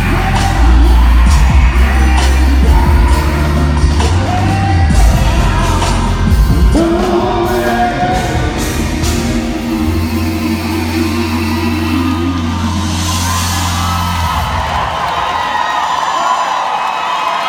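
Live R&B band and male singers performing a gospel-flavoured song through a concert PA in a large hall: heavy bass and drums under sung vocals. The band drops out near the end.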